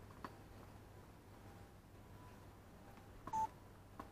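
A tennis ball bounced once on the hard court by the server just after the start, then a short, clear beep about three-quarters of the way through, over a low steady hum.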